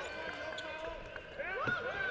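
Basketball being dribbled on a hardwood court, with faint voices from players and crowd in the arena.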